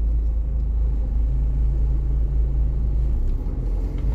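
Heavy diesel construction machinery running steadily: a low, even engine rumble.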